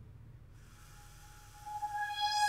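Breath-controlled software synthesizer lead note, played through a homemade balloon-and-cardboard breath sensor: a single steady tone fades in a little way in and swells, growing brighter near the end as the breath pressure rises.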